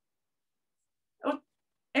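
Dead silence from the call's gated audio, broken about a second in by one short voiced call, then a word beginning right at the end.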